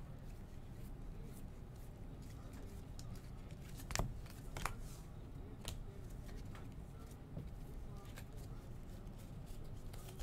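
Baseball trading cards handled in a stack: faint slides and flicks as cards are moved one by one, with a few sharper clicks of card edges around the middle, over a low room hum.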